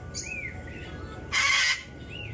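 A cockatoo gives one harsh screech about a second and a half in. A short, thin chirp comes just before it, near the start.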